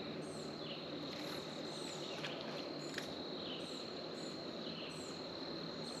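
Wooded lakeshore ambience: a steady high insect drone, with a bird repeating a short, falling call every second or so. Two faint clicks come near the middle.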